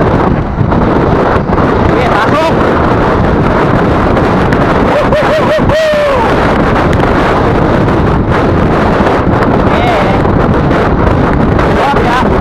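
Loud, steady wind noise on the microphone of a bicycle-mounted camera during a fast downhill ride. A short, wavering pitched sound, like a voice calling out, rises above it about five seconds in.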